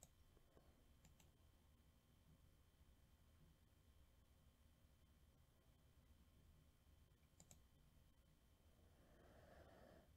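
Near silence: room tone with a faint low hum and a few faint clicks, one at the start, one about a second in and one about seven and a half seconds in.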